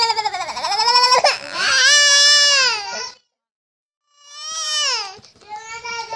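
Baby crying in long wailing cries whose pitch wavers and trembles. About three seconds in the sound cuts out completely for about a second, then a falling cry follows.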